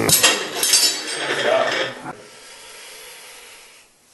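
Metal clattering and clinking from the Bull Ring grip implement being handled on its metal post, loud for about two seconds and then dying down to a faint rustle.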